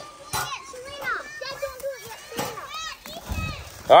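Children's voices talking and calling out in the background, high-pitched and scattered, with a couple of brief clicks in between.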